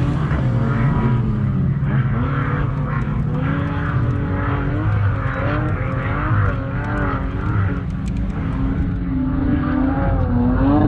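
Several 4x4 engines revving as SUVs drive close past on soft sand, their pitch rising and falling again and again.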